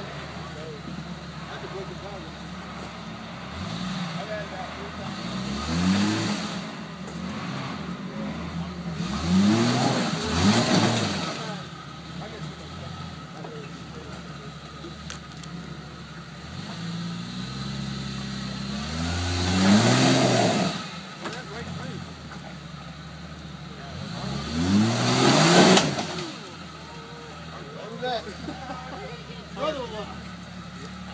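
Jeep Cherokee XJ engine revving hard in about five separate bursts, each rising and falling back to a low run in between. With each burst comes a noisy rush of the wheels churning mud and water as the Jeep works at climbing an undercut ledge that is too slick to get up.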